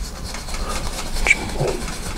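Bristles of a two-inch oil-painting brush scrubbing the canvas in small tight circles, a soft repeated rubbing over a low rumble, with one sharp tick a little past halfway.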